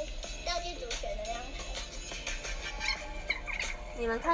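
Background music with a sped-up, high-pitched voice, played back from a tablet's speaker; the video was sped up, which makes the voice sound higher and cuter.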